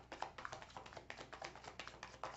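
A deck of fortune-telling cards being shuffled by hand: a quick, irregular run of light card clicks and slaps, several a second.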